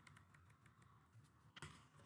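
Faint computer keyboard keystrokes as a word is deleted: a run of light key taps, with one louder tap about one and a half seconds in.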